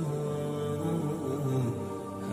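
Background music: a slow, wordless vocal melody with long held notes, running without a break.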